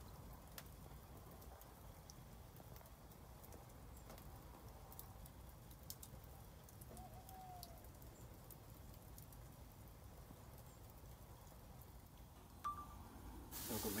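Wood fire burning in a fireplace, faint, with scattered small crackles over a low steady rumble. A louder hiss comes in near the end.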